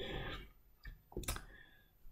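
A pause in speech, mostly quiet, with two or three short soft clicks a little after the first second.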